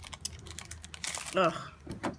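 Thin clear plastic sleeve crinkling and crackling in a quick run of small clicks as it is opened and a sticker sheet is slid out.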